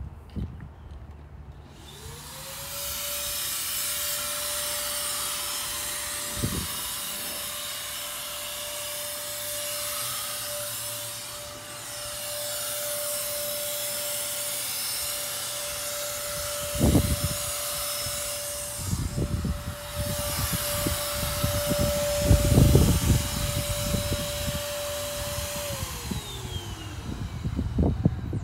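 Corded handheld electric fogger spraying disinfectant mist. Its motor spins up to a steady whine about two seconds in and runs with a hiss of air and spray, then winds down near the end. Knocks and bumps in the second half as it is handled.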